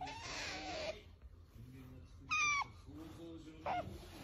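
Asian small-clawed otter calling while it is stroked: a breathy whine in the first second, then two short, high squeaks, the louder about halfway through and a shorter, lower one near the end.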